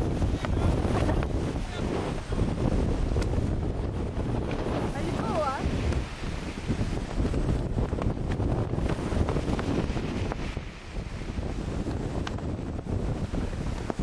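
Wind buffeting the microphone in gusts over the rush and splash of sea water around a yacht sailing fast through choppy open sea.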